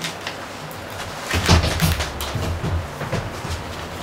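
Papers being handled at a table, with short clicks and a cluster of low knocks and thumps, loudest about a second and a half in.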